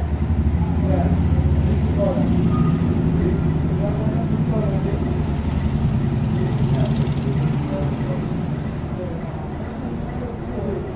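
A motor vehicle engine running steadily with a low, fast-pulsing rumble, easing off slightly near the end, with faint voices in the background.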